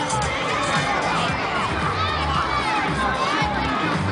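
A crowd of young children shouting and calling out over one another, many high voices at once in a steady din, with adult crowd voices mixed in.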